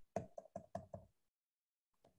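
About six faint, quick clicks in the first second from the computer being clicked to step back through presentation slides.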